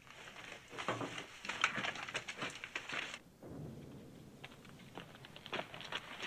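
Rustling and scuffing of movement: many small clicks and scrapes for about three seconds, then an abrupt drop to a quieter hiss with a few scattered clicks, which pick up again near the end.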